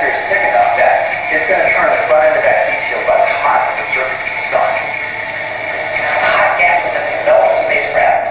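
A video soundtrack played over a hall's loudspeakers: background music with a man narrating. It sounds thin, with almost no bass.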